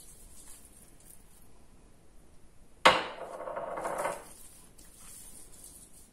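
A small glass spice jar set down with a sharp knock about three seconds in. About a second of hands rubbing ground nutmeg into raw pork loin fillets on a wooden cutting board follows it.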